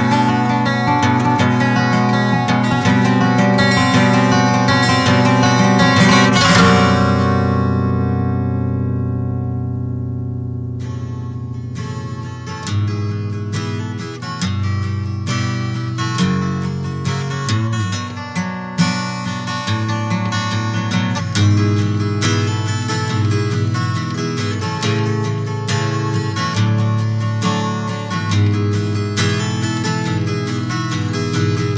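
Acoustic guitar music. A full, strummed passage rings out and fades away about seven seconds in, and from about eleven seconds a picked acoustic guitar plays on.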